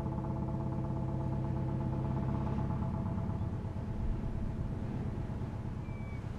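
A ship's engines running with a steady, even hum.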